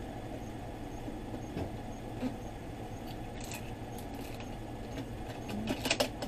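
Air conditioner and fan running: a steady hum of moving air. A few faint light clicks come around the middle and again near the end.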